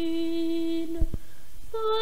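A boy treble singing unaccompanied, holding one long clear note, then going up to a higher note near the end. Two short low thumps come about a second in, between the notes.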